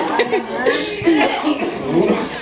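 Indistinct chatter of several voices in a room, with no clear words.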